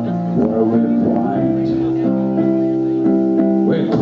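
Live band playing a slow song: long, sustained guitar and keyboard chords ringing out.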